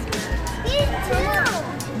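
Indistinct voices, including a child's high-pitched voice, over background music.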